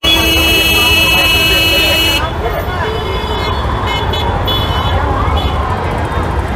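A vehicle horn held for about two seconds, then busy street traffic and crowd chatter with a few short, fainter honks.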